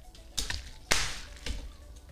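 Straws being jabbed through the plastic sealing film on top of boba tea cups: three sharp pops, the loudest about a second in.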